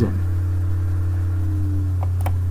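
Steady low background hum, with a fainter higher tone above it that slides slightly lower in the second half.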